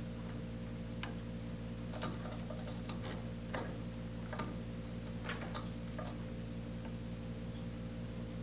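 Faint, irregular clicks and ticks of a plastic servo cable connector and wires being handled and pushed onto the robot board's header pins, over a steady low hum.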